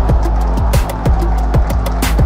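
Electronic dance music laid over the footage: a fast, steady kick-drum beat, about four strikes a second, over a deep steady bass, with a sharper drum hit about three quarters of a second in.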